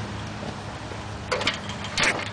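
Steady low hum with a few short, light knocks about a second and a half in and again at the end.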